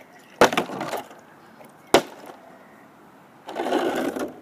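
A plastic bottle being flipped and knocking down: a hard knock with a short rattle about half a second in, and a second sharp knock a second and a half later. Close rustling from a hand near the microphone near the end.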